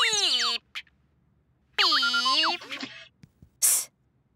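Cartoon sound effects: a quick falling whistle-like glide at the start, then a wavering, sung-sounding tone about two seconds in, and a short hiss near the end.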